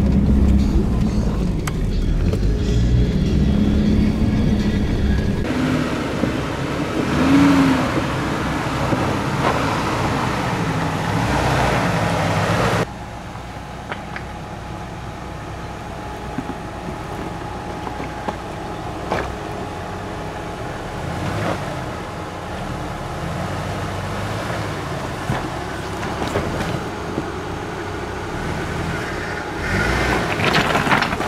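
Jeep Cherokee XJ crawling over a rocky trail: engine running at low speed with tyres grinding and knocking over rocks. For the first few seconds it is heard from inside the cab, then from outside as the Jeep climbs over boulders.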